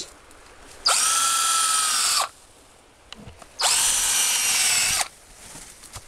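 Power drill boring into a rhododendron stem to make holes for herbicide injection, in two runs of about a second and a half each. Each run climbs in pitch as the motor spins up and drops away as it stops.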